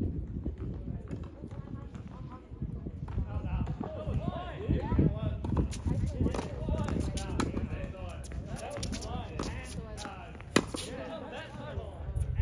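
Tennis ball struck by rackets and bouncing on a hard court during a rally, heard as a string of sharp pops and thuds, one especially loud near the end, with quick footsteps on the court.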